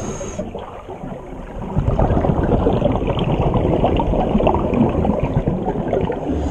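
Scuba breathing heard underwater: a short high hiss from the regulator at the start, then a rush of exhaled bubbles from about two seconds in.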